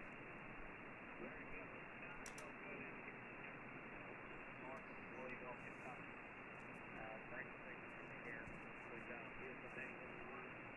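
Steady static hiss from a FlexRadio HF receiver tuned to 40-metre single-sideband, with a weak station's voice faintly audible through the noise.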